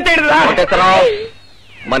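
A man's drawn-out, high, wavering voice with pitch sliding up and down, breaking off about a second and a half in. A faint whistle-like tone falls in pitch after it.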